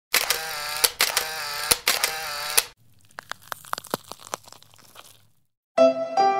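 Digital glitch sound effect: three loud bursts of distorted, warbling buzz, each cut off with a click, followed by about two seconds of faint crackling. Piano music begins just before the end.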